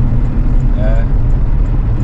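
Steady deep rumble inside a Porsche Cayenne's cabin at high speed, the engine, tyre and wind noise of fast highway driving. A brief vocal sound comes about a second in.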